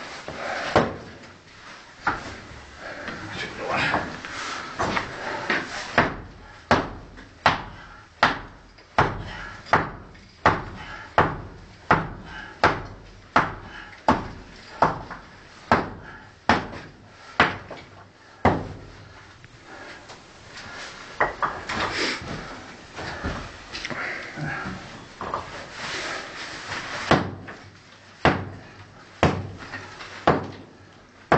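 A hammer repeatedly striking a brick wall, about one blow every 0.7 seconds for a long run through the middle, then more irregular blows near the end. Each strike echoes briefly off the brick vault.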